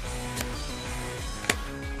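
Background music with a steady low line, with two short sharp clicks of a trading card pack being handled, a faint one near the start and a louder one about a second and a half in.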